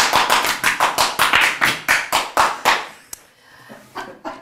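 Hands clapping at a quick, even pace, about four or five claps a second, dying away about three seconds in.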